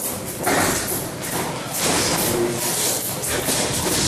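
White athletic tape being pulled off its roll in several noisy rasping pulls as it is laid over a boxer's gauze hand wrap.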